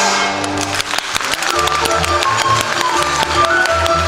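Chinese opera accompaniment ensemble playing an instrumental passage between sung lines: a held melodic line over a quick, dense run of percussion strokes.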